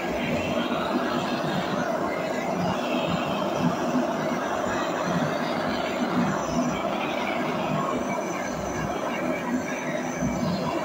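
Handheld gas-cartridge blowtorch burning with a steady hiss.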